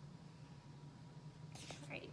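Very quiet room tone with a low steady hum, and a brief soft hiss near the end.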